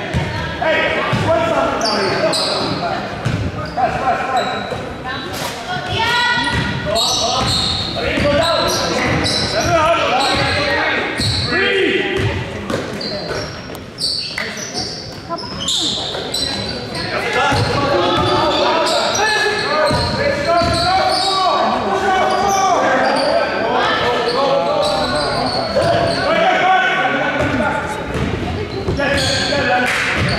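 Live basketball game in a gymnasium: a basketball dribbling and bouncing on the court amid indistinct shouting from players and spectators, echoing in the large hall.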